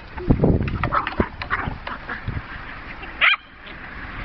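Jack Russell terriers at play, with scattered knocks and scuffles throughout and one short, loud bark about three seconds in.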